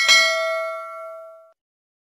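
Notification-bell sound effect of a subscribe animation: a single bright bell ding, struck with a sharp onset, ringing with several clear tones and fading out within about a second and a half.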